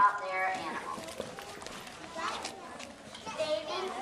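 Background chatter of a group of young children and adults, several voices talking at once, strongest near the start and again about two seconds in.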